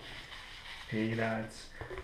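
Hands rummaging through polystyrene packing peanuts in a cardboard box, a faint rustling, with a man's short hummed filler sound about halfway through and a small click near the end.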